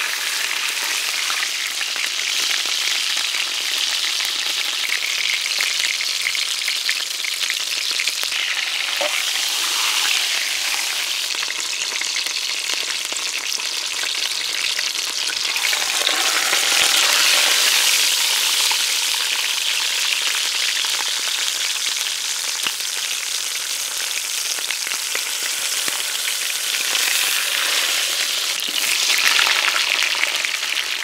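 Beef brisket searing in hot fat in a cast-iron Dutch oven: a steady sizzle, with a wooden spatula shifting and scraping the meat in the pot. The sizzle swells louder about halfway through and again just before the end.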